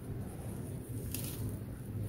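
Molded cylinders of stony, gritty red dirt being crushed and crumbling in the hands, a steady gritty crunch with a sharper crackle just over a second in.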